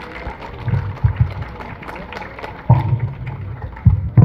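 An audience applauding in scattered, irregular claps with voices mixed in. A couple of low thumps come near the end as a handheld microphone is taken from its stand and handled.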